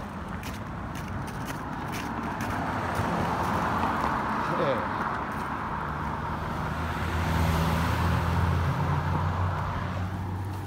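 Cars passing on a road. Tyre noise swells about halfway through, then a vehicle's low engine hum grows louder near the end.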